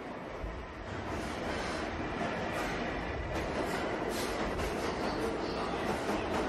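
Subway train sound: a rumbling, rattling clatter that swells over about the first second and then holds steady, the opening of a jazz piece built on the sound of the New York subway.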